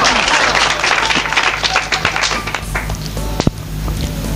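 An audience applauding after a poet is introduced, thick clapping that thins out and dies away about three seconds in.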